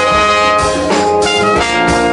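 Live band with trumpet and trombone playing sustained horn lines together over bass and drum kit, the horn notes changing every half second or so.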